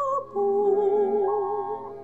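A woman singing a slow song over musical accompaniment, holding long, slightly wavering notes, with a short break between phrases just after the start and the level falling toward the end.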